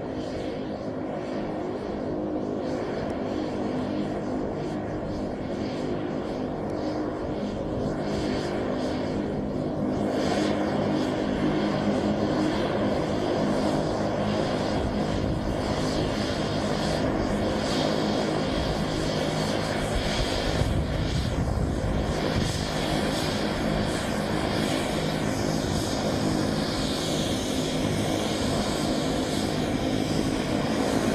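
MQ-9 Reaper's rear-mounted turboprop engine and pusher propeller running steadily as the drone taxis. The sound grows a little louder from about eight to eleven seconds in.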